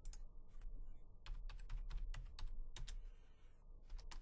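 Typing on a computer keyboard: an irregular run of about a dozen keystrokes while a name is typed in.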